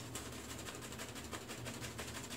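A shaving brush working shave-soap lather on the face: a faint, fast wet crackle of bristles and foam.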